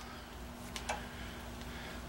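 A couple of faint ticks from a thread tap being turned by hand in a T-handle tap wrench, over a steady low hum.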